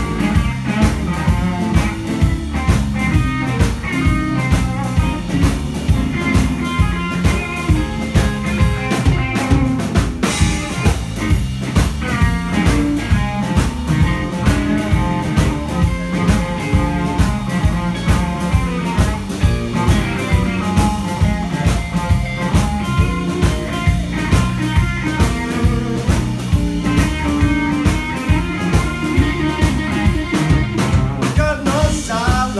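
Live blues-rock band playing an instrumental passage: two electric guitars, bass guitar and drum kit, with the drums keeping a steady beat.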